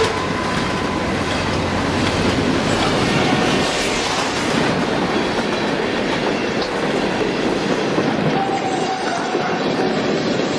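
Freight train cars rolling past on the rails: a steady, even rumble and clatter of wheels.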